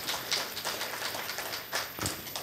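A pause between spoken sentences filled with faint, irregular sharp clicks, several a second, over room tone.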